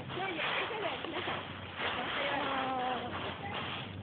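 Faint, muffled voices of people some way off, heard over rustling noise by a phone lying in a leaf bush.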